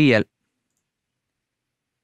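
A man's voice finishing a short spoken phrase, then dead silence, with no typing or other sound audible.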